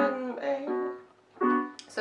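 Piano sound from an electronic keyboard playing jazz chords: three held chords, with a short silence a little after a second in.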